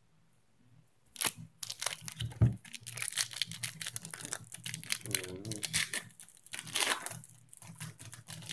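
Foil trading-card pack wrapper being torn open and crinkled by hand, a dense run of rapid crackles starting about a second in. A short murmur of voice comes midway.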